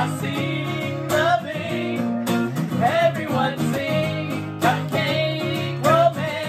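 Acoustic guitar strummed as accompaniment to a man and a woman singing together.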